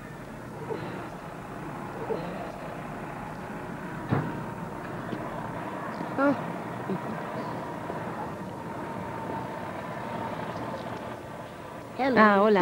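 Steady outdoor street background noise with a few brief, faint voices.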